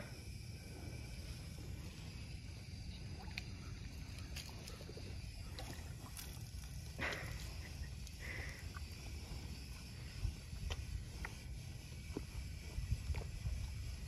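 Texas Longhorn cattle drinking from a water tub: faint slurps and splashes of water, a few louder ones about halfway through, over a low steady rumble.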